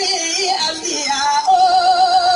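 A woman singing a melismatic line that settles about three-quarters of the way in into a long held note with even vibrato.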